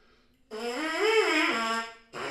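Trumpet mouthpiece buzzed on its own: one note that starts about half a second in, slides up in pitch and back down, then holds and stops just before the end.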